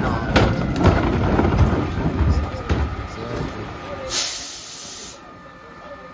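Thuds and clatter of a wheeled plastic trash cart coming off a Mack LEU garbage truck's carry-can loader and being rolled away, over the truck's running rumble. About four seconds in comes a loud burst of air hiss from the truck, lasting about a second.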